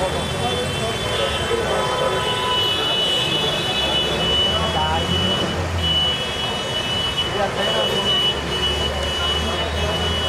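Outdoor ambience: a steady low rumble like traffic, with indistinct voices and a faint, steady high-pitched whine.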